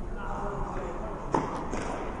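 A single sharp knock of a tennis ball about halfway through, echoing in a large indoor tennis hall, over a steady low hum.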